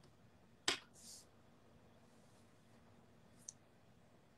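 A single sharp click about two-thirds of a second in, followed at once by a brief soft hiss, then a faint click near the end, over quiet room tone: the sounds of handling a device while cueing up a song.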